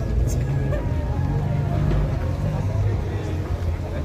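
A car engine idling with a steady low rumble, under faint voices from people nearby.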